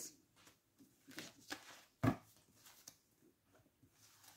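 Soft rustles and taps of a deck of divination cards being gathered and shuffled on a cloth-covered table, with one sharper knock about two seconds in.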